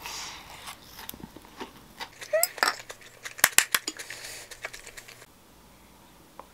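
Wooden spoon and chopsticks clicking and scraping against a ceramic bowl as the rice and salmon are stirred and scooped, with a cluster of sharp clicks in the middle.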